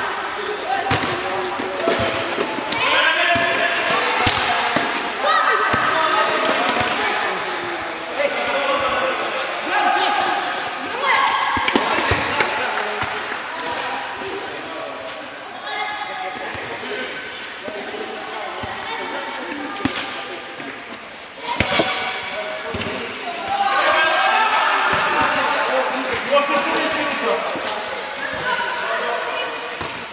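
A football being kicked and bouncing on a hard indoor court in a large hall, with sharp thuds now and then, one of the loudest about two-thirds of the way in, over children's voices shouting during play.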